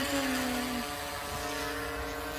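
Quadcopter's electric motors and propellers humming steadily in flight, with the lowest note sliding slightly lower and dropping out within the first second.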